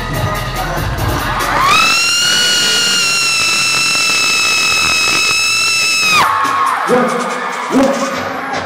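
Concert backing track with a beat that cuts out about two seconds in. A fan close to the microphone then lets out one long high-pitched scream that rises and is held for about four seconds, followed by shorter shouts from the crowd.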